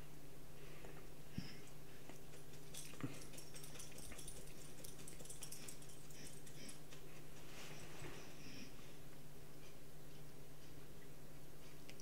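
Quiet kitchen room tone: a steady low hum, with two faint clicks about a second and a half apart near the start.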